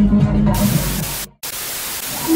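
Bass-heavy party music breaks off about half a second in to a loud hiss of TV-style static, with a split-second dropout to silence partway through: a static sound effect under a logo transition.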